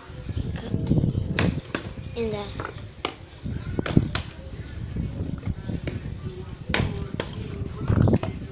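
Partly filled plastic water bottle flipped onto a concrete floor: a series of sharp knocks and clatters as it lands and is picked up again, the loudest about four seconds in when it falls over onto its side.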